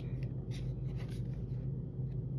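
Soft, scattered rustling and scraping of Pokémon trading cards being handled and slid against each other in a metal tin, over a low steady hum.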